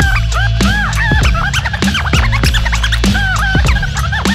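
DJ scratching a record on a turntable over a hip-hop beat with a steady bass line. The scratched sample makes many quick rising-and-falling pitch sweeps, several a second.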